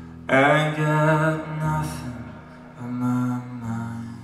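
Live music: a man sings a long wordless note with vibrato over sustained electric guitar. The note comes in sharply a moment in, swells, and comes back louder near the end.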